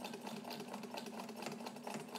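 Necchi BU Nova sewing machine stitching a long, wide zigzag through heavy fabric: a steady motor hum with quick, even needle clicks.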